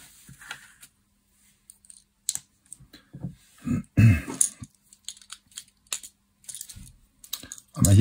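Small plastic LEGO bricks clicking and rattling as parts are picked up and pressed together, in short irregular taps, with a louder knock about halfway through.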